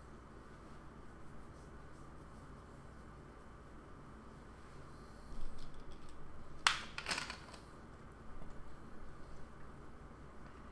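Quiet room tone with a faint steady hum. Soft rustling starts a little past the halfway mark, with two sharp clicks close together about two-thirds of the way through.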